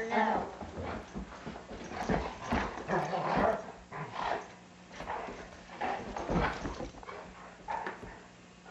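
Two Doberman dogs play-fighting, making a run of short, irregular dog noises.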